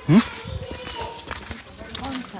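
Footsteps on brick paving, with a short, loud call that rises quickly in pitch just after the start.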